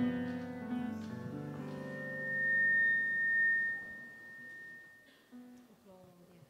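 Church praise band's keyboard and guitar playing slow, sustained chords as the introduction to a hymn. A single high steady tone is held for about three seconds in the middle and is the loudest part. The music fades toward the end.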